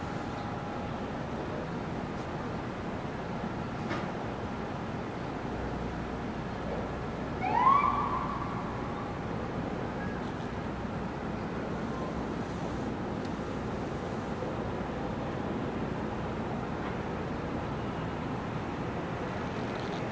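Steady city traffic noise, broken once about seven and a half seconds in by a short rising whoop of an emergency-vehicle siren.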